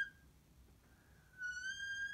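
Dry-erase marker squeaking on a whiteboard as a line is drawn: a high, steady squeal that stops just after the start, then starts again about a second and a half in with a slight upward slide and holds.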